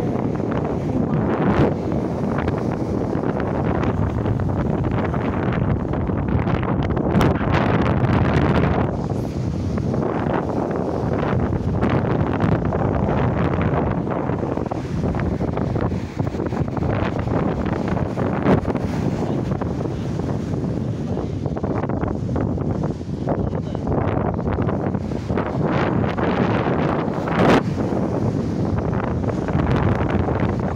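Wind buffeting a phone's microphone in a continuous, fairly loud noise with frequent short gusts, over the wash of surf on the beach.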